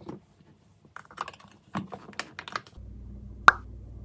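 Small objects handled on a kitchen counter: a quick string of light clicks and knocks, then one sharp knock or pop about three and a half seconds in, the loudest sound. A low steady hum sets in just before it.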